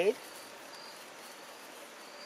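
Faint, high-pitched insect calls, a few short steady notes over a quiet outdoor background.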